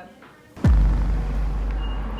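A deep boom sound effect: a quick sweep falling in pitch about two-thirds of a second in, dropping into a sustained low rumble.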